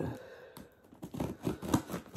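Scissors cutting and tearing through packing tape on a cardboard shipping box: a sharp first cut, then a run of short irregular snips and scrapes about a second in.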